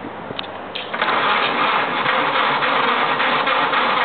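Ford Model A four-cylinder flathead engine running, back in life after twenty years sitting; it gets noticeably louder about a second in and holds there.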